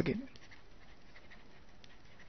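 A man's voice finishes a word, then a pause with only faint background hiss.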